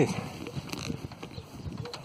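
Light, irregular knocks and rustling from a home-built steel-frame land yacht with a Tyvek sail as it is tested in light wind.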